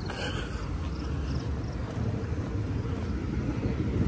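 Steady low rumble of street traffic, getting a little louder in the second half.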